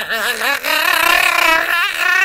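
A man's voice held on a high, wavering note, with no words.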